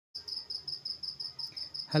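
Insect chirping: a high trill pulsing about six times a second.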